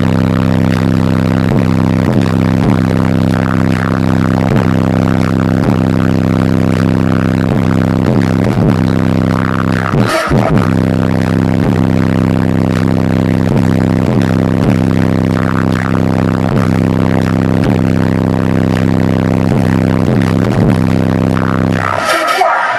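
High-powered truck sound system, four DC Audio 18-inch subwoofers on about 10,000 watts, playing a steady, very loud low bass tone that pushes air hard enough out of the open window to blow hair around. The tone drops out briefly about ten seconds in and then resumes.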